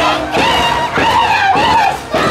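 A group of women singing a high-pitched carnival song while beating small Andean hand drums (tinyas) with sticks.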